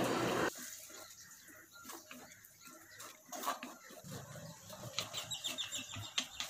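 Mostly quiet, with faint scattered clicks and scrapes in the second half: a wooden spoon stirring a curry in a clay pot.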